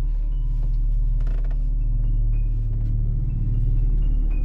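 A wooden door creaking slowly open, a low, drawn-out creak over a deep steady drone.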